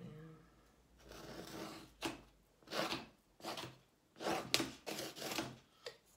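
A stick of charcoal scraping across a canvas in a run of short, scratchy strokes, about half a dozen, from about a second in.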